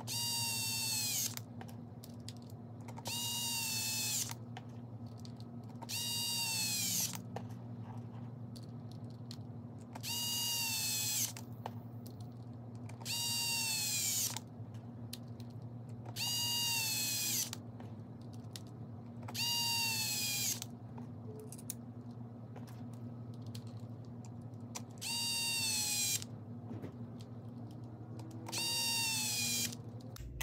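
Small cordless power driver running screws into an RC crawler's wheel hub. It comes in nine short runs of about a second each, a few seconds apart, and the whine falls in pitch during each run.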